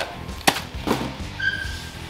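A small plastic bag of bolts and fittings and its cardboard box being handled by hand: two sharp clicks, about half a second and a second in, then a brief high tone near the end, over faint background music.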